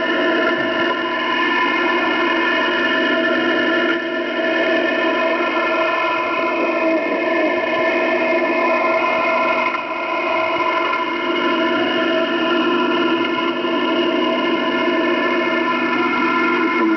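Shortwave radio reception in lower sideband: a steady cluster of many held tones, one above another, over radio hiss, like an unmodulated multi-tone data signal or carriers rather than a voice.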